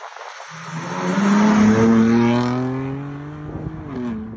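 BMW M2's turbocharged straight-six under hard acceleration as the car powers out of a corner, the engine note climbing slowly in pitch, loudest after about a second and a half, then fading as the car pulls away.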